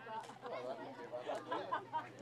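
Untranscribed voices of players and onlookers calling and chattering across an outdoor shinty pitch, over a steady low hum, with a short sharp knock about one and a half seconds in.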